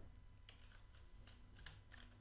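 A few faint computer keyboard keystrokes, scattered clicks as digits are typed in, over near silence.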